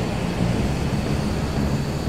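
Jet aircraft flying overhead: a steady rushing engine noise, heaviest in the low end.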